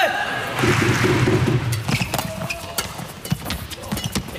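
A badminton rally in an arena: repeated sharp cracks of rackets striking the shuttlecock, over crowd noise.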